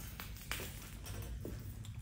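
Quiet shop room tone: a low steady hum with a few faint soft knocks.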